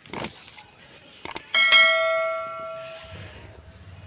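Subscribe-button overlay sound effect: short mouse clicks, then a bell ding at about 1.5 s that rings out and fades over about a second and a half.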